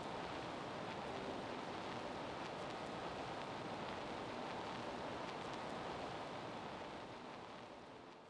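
Steady hiss-like background noise with no distinct events, fading out near the end.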